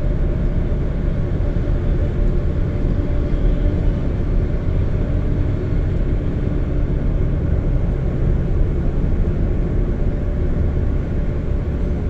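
Steady road and engine noise inside a car's cabin at motorway speed: a continuous low rumble of tyres and engine with no change in level.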